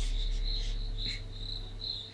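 A steady, deep bass tone from a subwoofer under test, with a high insect chirp repeating a little more than twice a second over it and a short laugh near the start.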